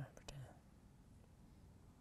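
A brief low murmur of a man's voice in the first half second, then near silence: room tone.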